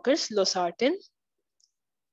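A woman's voice speaking for about the first second, then silence.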